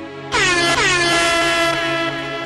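A loud horn-blast sound effect starts suddenly a moment in, dipping briefly in pitch, then holds for about a second and a half over the intro music.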